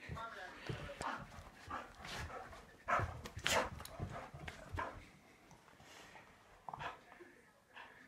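A black puppy playing tug-of-war with a rope toy, making short, irregular vocal sounds, louder around the middle and quieter near the end.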